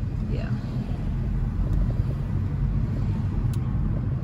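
Steady low rumble of a car's engine and tyres heard from inside the moving car's cabin.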